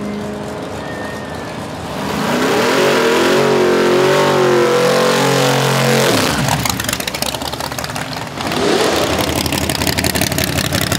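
Drag-racing car engines at full throttle. First comes a pass heard down the strip, its engine note loud and wavering. About six seconds in it changes to a close, turbocharged Fox-body Mustang engine revving hard and rising during a burnout.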